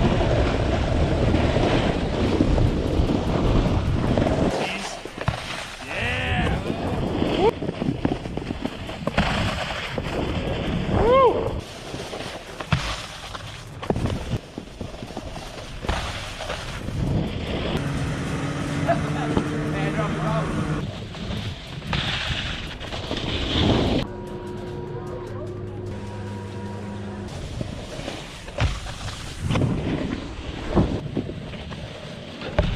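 Wind buffeting an action camera's microphone as a snowboard slides and scrapes over packed snow. In the second half, held music-like tones come and go.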